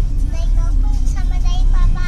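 Steady low rumble of a moving car heard from inside the cabin, with a person's voice talking over it.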